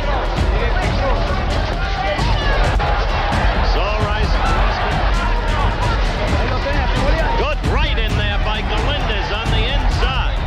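Background music mixed with a voice speaking over arena crowd hubbub.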